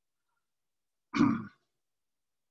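A man clearing his throat once, briefly, a little over a second in, between stretches of silence.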